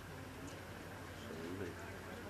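A quiet pause in amplified speech, with a steady low hum and a faint, indistinct sound about a second and a half in.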